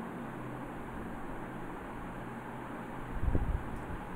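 Steady hiss and faint low hum from an open microphone on a video call, with one low thump about three seconds in.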